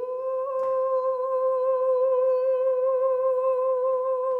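A singer's voice holding one long, steady note with a light vibrato as a vocal exercise in a singing lesson.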